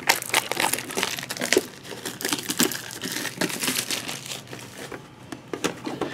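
Foil Pokémon booster-pack wrappers crinkling and a metal collector's tin being handled, with many small clicks and taps.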